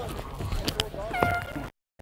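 Rustling and knocking of a padded practice jersey being pulled on over shoulder pads, rubbing against a body-worn microphone, with a short high squeak about a second in. The sound cuts off suddenly near the end.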